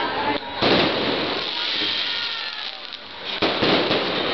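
Aerial fireworks shells bursting: a loud bang about half a second in and another about three and a half seconds in, the noise fading away between them.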